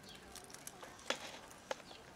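A cat eating dry kibble from a plastic tub: scattered small crunches and clicks, with two sharper clicks about a second in and near the end.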